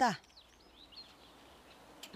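A woman's voice trailing off, then quiet outdoor ambience with a few faint short bird chirps early in the pause.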